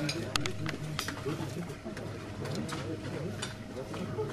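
People talking in a room, with scattered short clicks and knocks and a faint steady hum underneath.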